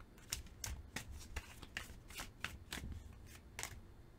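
A deck of tarot cards being shuffled by hand: a run of quick, irregular card clicks and slaps. It stops shortly before the end.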